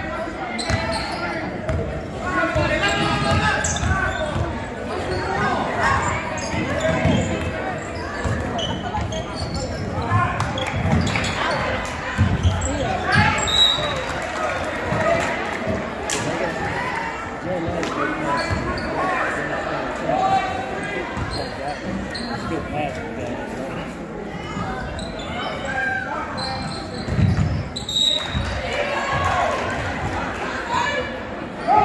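Basketball being dribbled and bounced on a gym court during a game, with many people talking, all echoing in a large hall.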